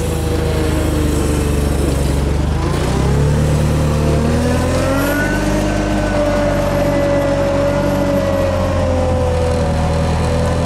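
Komatsu forklift's engine revving under load while its hydraulic lift raises the forks, with a steady whine over the engine; the pitch climbs about two to three seconds in and then holds.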